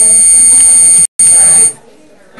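A loud, steady high-pitched electronic whine with a low hum under it, from the meeting's sound or broadcast system. It cuts out for an instant just after a second in, then stops suddenly near the end.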